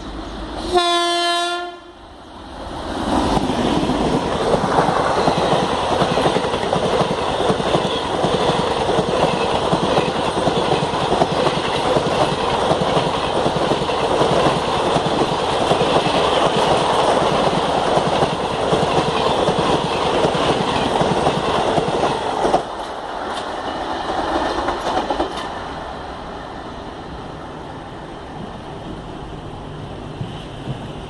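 An Indian Railways WAP-7 electric locomotive sounds one short horn blast about a second in. Then the express train passes close at speed, a long, loud rush of coaches and wheels on the rails, which stops abruptly a little over twenty seconds in and gives way to a quieter, steady background.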